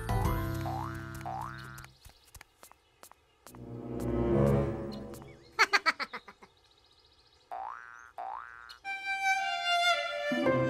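Cartoon sound effects and music: springy boing sounds that rise in pitch, a swelling whoosh in the middle, a quick run of taps, and more boings. Soft music begins near the end.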